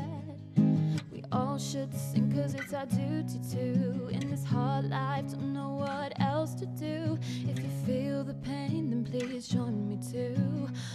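A woman singing with an acoustic guitar accompaniment, the guitar's plucked and strummed notes under her voice's wavering, held melody.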